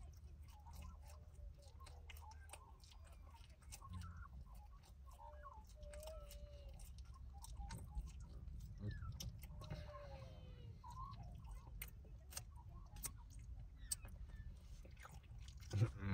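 Close-up chewing of a chicken and bacon club sandwich: many small, wet mouth clicks and crunches over a low steady hum.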